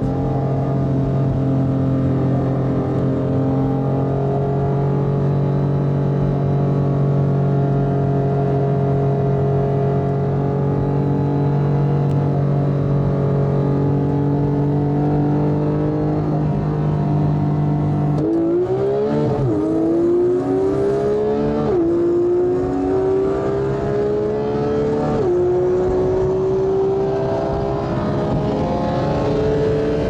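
Porsche 911 flat-six engine running at steady, moderate revs, then going to full throttle about eighteen seconds in. The pitch climbs through the gears, with four quick upshifts two to four seconds apart: flat-out acceleration from a rolling start.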